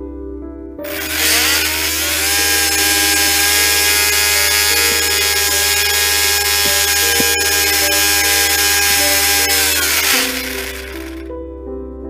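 Kyosho MINIUM A6M5 Zero's 8.5 mm coreless brushed motor and reduction gear whining as they spin the three-blade propeller on a thrust test, with propeller rush. It starts about a second in, rises in pitch for a second or so, holds a steady high whine, then winds down around ten seconds in. At this power it makes only about 24 g of thrust, under half the plane's 55 g weight.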